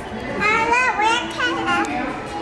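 A young child's high-pitched voice, vocalizing in two short stretches with rising and falling pitch but no clear words, starting about half a second in.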